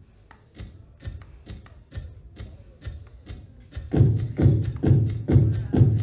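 Beatboxed vocal percussion looping through a BOSS RC-505 loop station: a steady pattern of sharp clicks about twice a second, joined about four seconds in by a louder, deeper kick-and-bass layer on the same beat.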